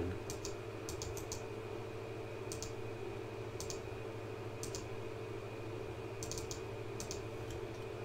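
Scattered sharp clicks, several in quick pairs, from a computer mouse and keyboard while a list is copied and pasted into a spreadsheet, over a steady electrical hum.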